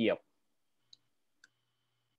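A word of speech ends, then two faint short clicks about half a second apart in a near-silent pause; a faint steady hum sets in with the second click.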